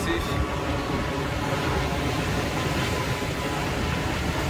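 Jet airliner passing near the airport: a steady low rumble with a faint high whine, over wind and surf.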